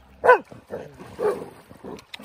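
Dog barking during rough play in shallow water: one sharp, loud bark falling in pitch a moment in, then a second, rougher bark about a second later.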